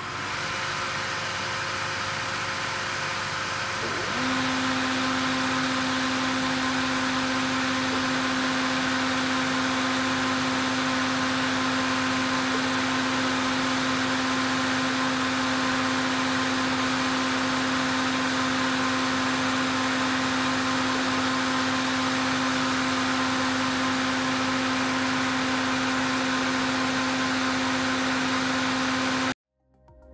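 Voorwood P78 plough cut foiler running with its heads under power: a steady mechanical whir and hiss, joined about four seconds in by a steady hum. The sound cuts off suddenly near the end.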